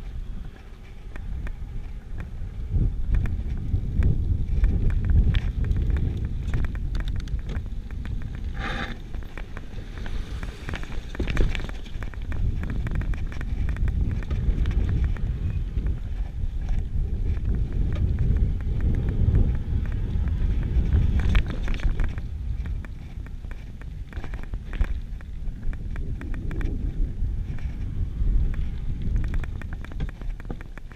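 Wind rumbling on the microphone, mixed with the rattle and knocks of a Giant Full-E+ electric full-suspension mountain bike rolling down a rough, stony singletrack.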